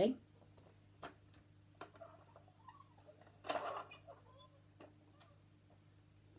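Faint handling of a plastic teaching clock as its hands are turned to a new time: a few scattered light clicks, with a short murmur or breath about halfway through. A steady low hum lies underneath.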